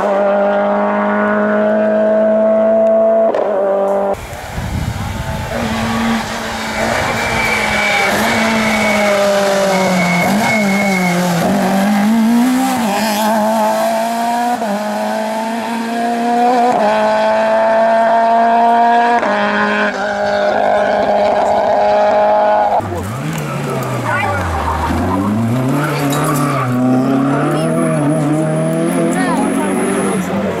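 Rally car engines running at high revs on a special stage as cars come past one after another, the pitch holding steady, then stepping at gear changes and dipping and rising again where a car slows for a corner and accelerates out, with tyre noise on the loose surface.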